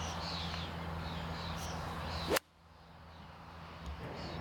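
A golf iron swung through long rough with a short rising swish, striking the ball once about two and a half seconds in. Birds chirp in the background before the strike.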